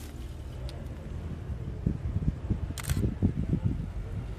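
Handheld camera being moved: low rumble with a run of short bumps of handling noise from about halfway through, and one sharp click near three seconds in.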